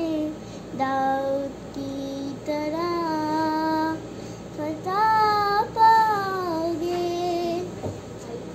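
A young girl singing an Urdu Christian geet (gospel hymn) solo, without accompaniment, in long held phrases that bend in pitch at their ends, with short breaths between them.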